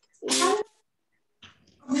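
A single short, pitched vocal cry lasting about half a second, a quarter second in.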